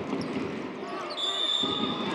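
Basketball game court sound: sneakers squeaking and the ball bouncing on the hardwood, then a referee's whistle blown just over a second in and held steady for almost a second, stopping play.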